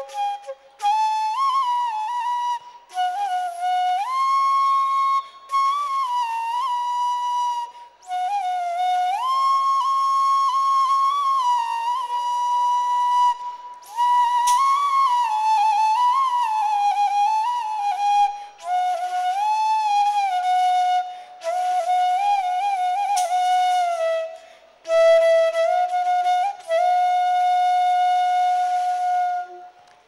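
Solo bamboo flute (bansuri) playing a single melody: long held notes with quick ornamental turns and slides, in phrases broken by short pauses for breath.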